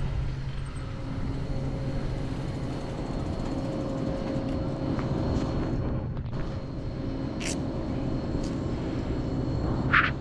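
Mountain bike rolling slowly over packed dirt, a steady low rumble of tyre and wind noise on the helmet camera, with a few sharp clicks in the last few seconds.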